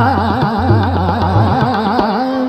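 Hindustani classical vocal in Raag Shiv Abhogi: a male voice singing rapid taan runs, the pitch swooping up and down several times a second. The voice enters abruptly at the start, over a low accompaniment.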